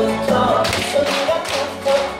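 Upbeat song with a sung melody playing, with several sharp hand taps in time with it.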